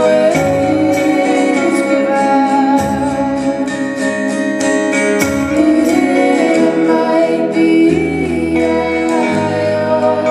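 Live rock band: a woman singing over acoustic and electric guitar and drums with cymbals, played loud enough that the guitars are somewhat distorted.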